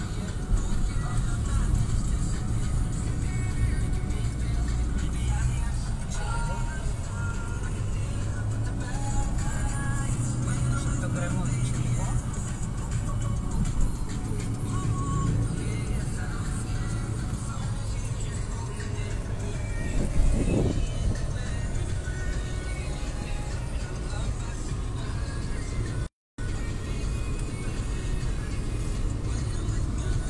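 Steady low rumble of a car driving, heard from inside the cabin, with music and a voice over it. The sound cuts out completely for a moment about three-quarters of the way through.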